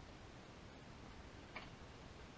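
Near silence, with one faint, short metallic click about one and a half seconds in from a wrench working the installer tool's nut on the crankshaft nose.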